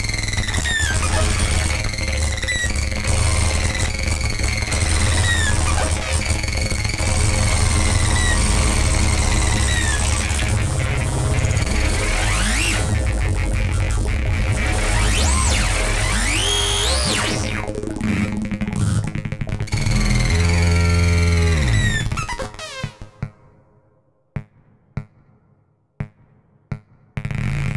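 Eurorack modular synthesizer running a chaotic feedback patch: a dense, noisy texture over a heavy low drone, with a falling chirp repeating about every second and a half and pitch glides sweeping up and down as knobs are turned. Near the end the sound cuts out to near silence, broken by a few short blips.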